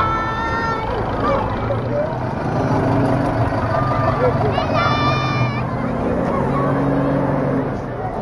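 Minibus engines running steadily as the buses drive past, with children's voices calling out over them and one high, held call about five seconds in.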